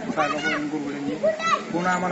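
Speech: a man talking in Marathi.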